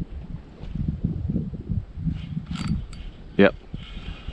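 Fishing reel being cranked as a fish is played on a bent rod, with a sharp knock about three and a half seconds in.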